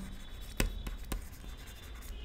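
A stylus writing a word on a tablet screen: soft scratching with a few light taps as the pen touches down.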